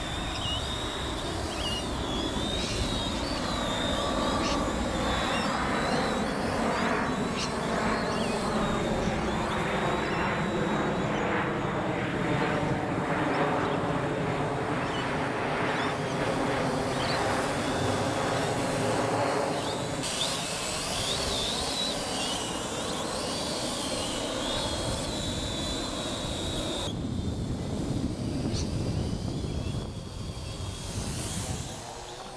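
Parrot AR.Drone quadcopter in flight: its electric rotors whine steadily, the pitch slowly rising and falling as it is steered about.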